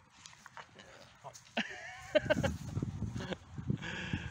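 A dog close to the microphone, its breathing and snuffling mixed with rustling and knocking as it nuzzles over the phone in the grass, from about two seconds in.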